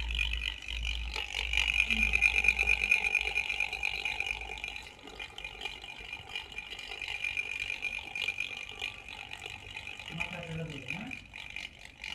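24-volt DC motor, run on 12 volts DC, driving a homemade three-gear spur train (driver, idler and driven gear) at a 3:1 reduction: a steady whine from the motor and meshing gears. It grows fainter about halfway through.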